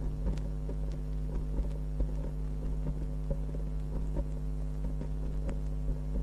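Gap between tracks on a vinyl record: a steady mains hum with scattered faint crackle and ticks from the record surface.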